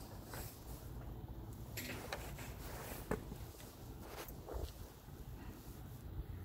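Kalanchoe cuttings being handled: leafy stems rustling, with a few small snaps and clicks as lower leaves are pulled off at the base of the stem. The sharpest click comes about three seconds in.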